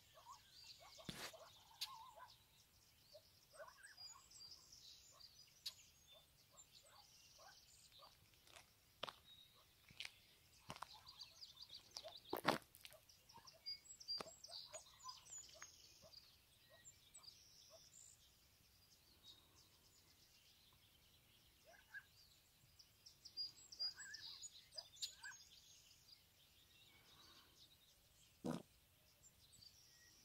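Faint, scattered high chirps of birds with occasional sharp clicks, the loudest about twelve seconds in.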